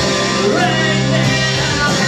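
Live rock band playing loudly: electric guitars, bass and drums with a singer.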